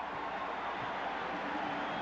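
Basketball arena crowd noise: a steady, even din from the stands with no break, as the crowd reacts to a late-game turnover.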